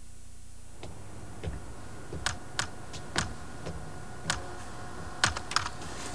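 Typing on a computer keyboard: a dozen or so separate keystrokes at an uneven, unhurried pace, starting about a second in and clustering toward the end.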